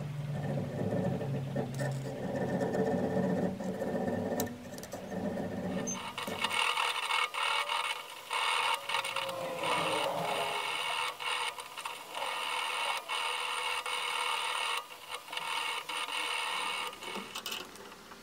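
Needle file rasping back and forth in a slot cut through a small steel plate held in a bench vise, stroke after stroke with short breaks between them. About six seconds in the sound turns higher and brighter.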